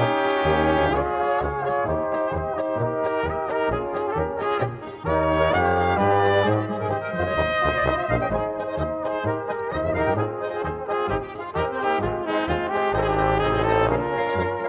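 Alpine folk band playing a moderately quick polka-française: three high brass horns carry the tune together over a tuba's steady oom-pah bass, with guitar and harp accompanying.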